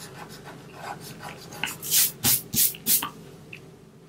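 An eraser rubbing on drawing paper in four quick back-and-forth strokes, a little under two seconds in, rubbing out extra pencil guide lines.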